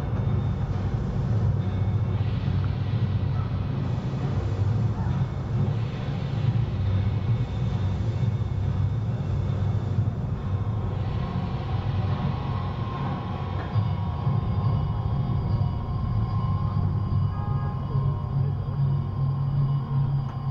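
Steady low rumble of outdoor city ambience picked up on a walking camera's microphone. Faint steady higher tones join about halfway through.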